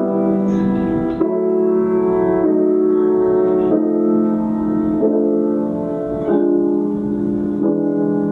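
Grand piano playing a slow succession of held chords, one new chord about every second and a quarter. It is a 19th-century example of 'slip-sliding' harmony, in which the voices move by half steps and whole steps into each new chord.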